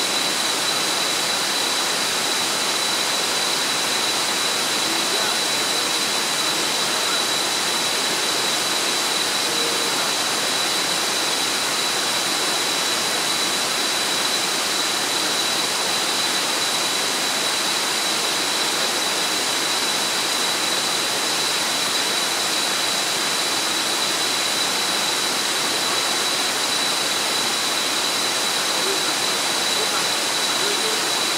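Rushing water of a river cascading over rocks in a small waterfall: a dense, steady roar of white water that does not change. A thin, steady high-pitched tone sits over it.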